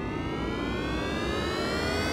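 Cartoon airplane sound effect: a jet-engine whine rising slowly and steadily in pitch over a rushing rumble.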